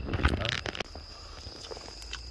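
Chopsticks pick at grilled fish in crinkled aluminium foil, making a short rustle in the first second. After that, crickets keep up a steady high tone.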